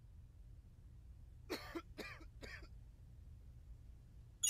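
Three quiet coughs in quick succession, about a second and a half in, from an animated cartoon soundtrack, over a faint low hum.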